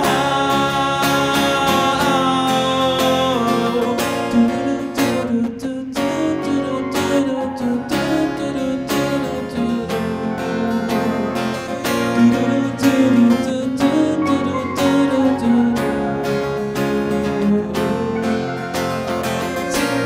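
Live guitar music from an acoustic and an electric guitar: chords held for the first few seconds, then steady rhythmic strumming.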